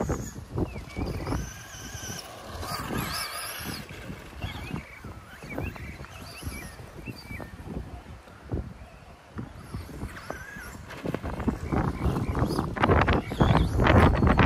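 Traxxas Slash's brushed electric motor whining, its pitch rising and falling with the throttle as the truck is driven around the dirt track. Wind buffets the microphone throughout, loudest in the last few seconds.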